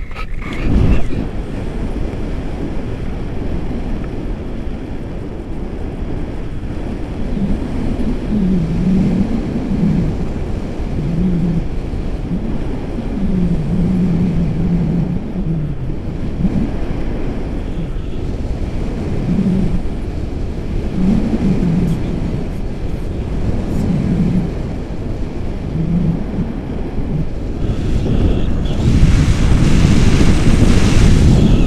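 Airflow buffeting the microphone of a camera on a paraglider in flight, a loud steady rush. A low wavering tone comes and goes under it through the middle, and the rush grows stronger in the last two seconds.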